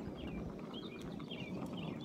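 Small birds chirping, a run of short high chirps, over a low outdoor rumble of wind and handling noise on a phone microphone.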